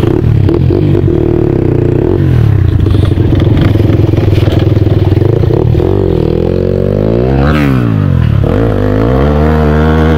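Dirt bike engine running at a steady low speed, then revved up and back down twice in slow swells during the last few seconds.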